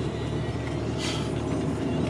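Steady engine and road noise inside the cabin of an Opel Corsa hatchback, with a brief hiss about a second in.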